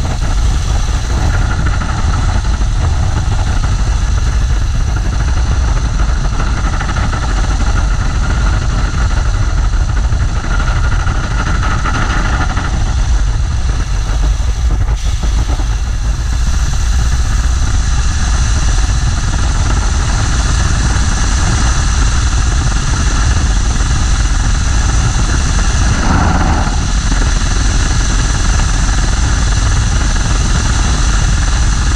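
Le Rhône 80 hp rotary engine of a Fokker Dr.I running steadily on the ground, heard from the open cockpit.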